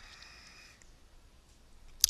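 Near silence: faint room tone and hiss, with a faint steady high tone during the first second.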